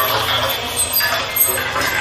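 Harsh noise music: a dense, continuous wash of hiss and grainy texture over a low steady hum, with thin high tones and a few sharp metallic clicks.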